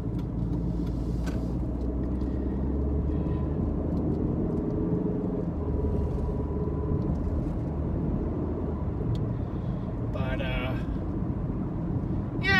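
Steady low road and engine noise inside a moving car's cabin, with the engine note climbing slightly a few seconds in.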